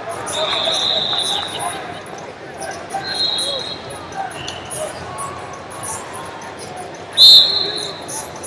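Referees' whistles blowing in a large hall: several high blasts of about a second each. The loudest and closest comes about seven seconds in, the whistle that starts the bout. A murmur of crowd voices runs underneath.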